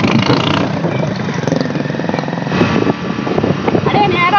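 Hero Splendor motorcycle's single-cylinder four-stroke engine running steadily, heard from the rider's seat.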